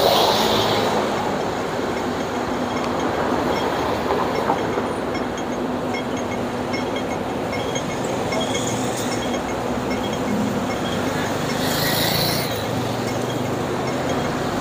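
Busy city street traffic: a steady rumble of passing vehicles, loudest at the start as a bus passes close by, with another vehicle passing near the end.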